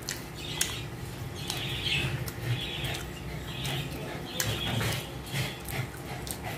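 Close-up eating sounds: chewing with irregular wet smacks and sharp little clicks of the mouth, while fingers pull apart chicken in a thick gravy on a plate.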